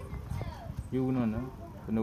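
Background speech: a voice with two drawn-out, steady-pitched vocal sounds, one about a second in and one at the end.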